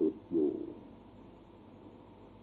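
A monk's low voice ends a spoken phrase on a drawn-out syllable about half a second in. The rest is the steady faint hiss of an old, narrow-band recording during a pause in the talk.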